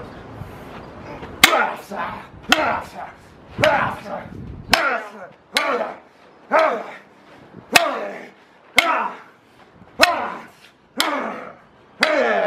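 A heavy weapon striking a PR-24 side-handle police baton again and again as it blocks, about ten hard hits roughly one a second.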